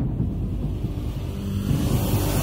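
Sound-design bed of a TV channel's logo ident: a steady deep rumble with little high end.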